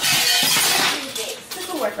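Metal kitchen utensils clattering in a stainless-steel utensil holder as it is grabbed off the counter, a rattling clatter lasting about a second. Speech follows in the second half.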